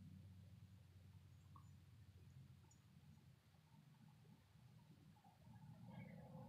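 Near silence: room tone with a faint low hum.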